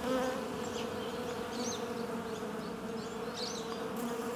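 Bees buzzing, laid in as a sound effect: a steady drone holding one pitch, with faint high chirps above it.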